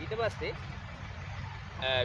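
A steady low rumble, with a brief spoken fragment near the start.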